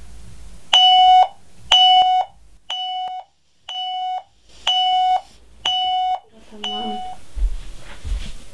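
An alarm clock beeping: seven evenly spaced high beeps, about one a second, each about half a second long, sounding a wake-up alarm. A low rumbling noise follows near the end.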